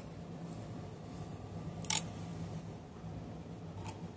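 Handling noise from hands working a wig's strands: a sharp click about two seconds in, with fainter clicks at the start and near the end, over a low steady hum.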